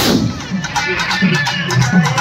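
A string of firecrackers going off on the ground: a sharp bang right at the start, then rapid crackling pops, over loud music.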